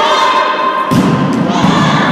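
A volleyball struck with a sharp thump about a second in, amid girls' shouting and cheering voices ringing in an echoing sports hall.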